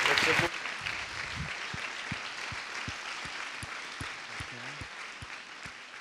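Audience applauding, dropping sharply in level about half a second in and then fading out gradually.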